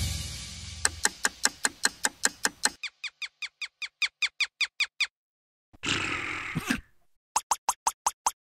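Cartoon sound effects: a fast run of short squeaks, about five a second, then a brief noisy hiss about six seconds in and another quick run of squeaks near the end.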